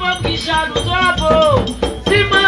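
Haitian Vodou ceremonial drums beating a steady rhythm with a shaken rattle, under voices singing a chant.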